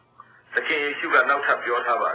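Speech only: a man's voice preaching, resuming about half a second in after a brief pause.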